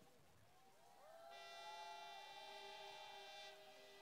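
Faint horn-like tones at several pitches at once. They slide in during the first second, hold steady for about two seconds, then fade, while one lower tone lingers until near the end.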